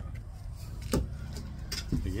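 A portable toilet's plastic door being unlatched and opened, heard as a couple of sharp clicks near the end, over a steady low outdoor rumble.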